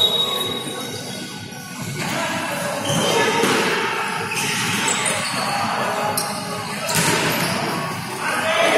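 Futsal game sounds in a large sports hall: the ball being kicked and bouncing on the wooden floor, with a sharp kick right at the start, and players' voices calling out, all with hall echo.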